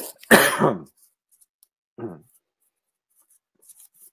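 A man coughs once, a single harsh burst, then about a second later makes a brief, faint throat sound.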